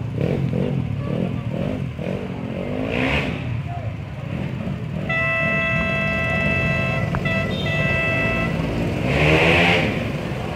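Go-kart engines running as karts lap the track, with one kart passing close near the end, the loudest moment. A steady high tone is held for a few seconds in the middle.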